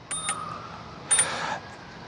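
Anyhill electric scooter's bell rung three times with short, high dings, the third about a second in the loudest and ringing longest.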